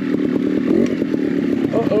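Trials motorcycle engine running as it is ridden, its note rising and falling slightly with the throttle. A rider's short exclamation of 'oh' comes near the end.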